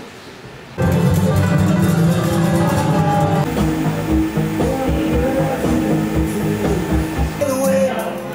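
Background music with a steady beat, starting abruptly about a second in after a moment of quiet room noise.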